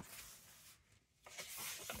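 A book page being turned by hand, a soft paper rustle that builds a little past halfway through, after a brief near-silent gap.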